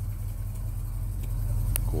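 1970 Dodge Coronet's 383 big-block V8 running at idle with a steady low rumble as the car creeps along at walking pace, getting a little louder toward the end.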